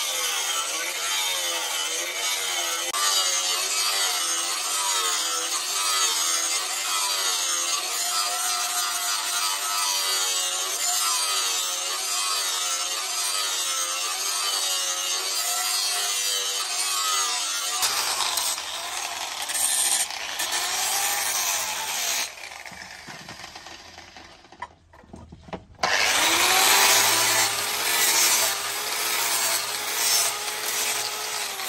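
Electric angle grinder with an abrasive disc grinding a knife blade, its motor whine wavering in pitch as the disc is pressed into the metal. About two-thirds of the way through the grinding drops away for a few seconds, then starts again at full level.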